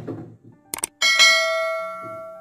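Subscribe-button animation sound effect: two quick mouse clicks, then a bright bell ding about a second in that is struck again and rings out slowly.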